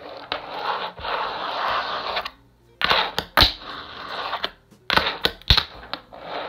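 Fingerboard on Cartwheels wheels rolling across a wooden tabletop for about two seconds, then sharp clacks of the board's deck and wheels hitting the wood in two quick clusters as tricks are tried, the loudest near the end.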